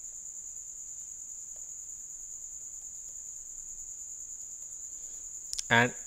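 A steady high-pitched whine, one constant tone, over faint hiss.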